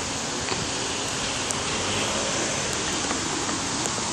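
Steady rushing wind noise on a phone's microphone, with no clear events.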